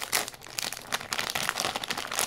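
Plastic candy wrapper crinkling in irregular crackles as hands pull it open, loudest just after the start.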